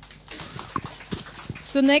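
Light, scattered clapping from an audience, faint beside the voices, then a man's voice starts near the end.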